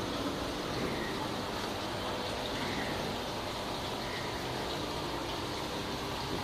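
Water running steadily in an aquaponics system, flowing through the gravel grow beds.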